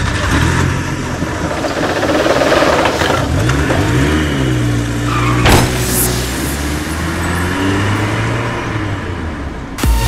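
Intro sound effects of a car engine running and revving over a low drone, with a sharp hit about five and a half seconds in.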